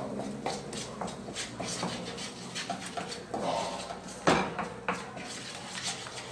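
Wooden spoon stirring and scraping a thick roux of margarine and flour around a nonstick frying pan as the flour cooks for a white sauce: a string of irregular scrapes and knocks, the loudest about four seconds in.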